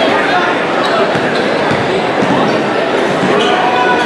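A basketball dribbled on a hardwood gym floor, over the steady chatter of a crowd in a large gym.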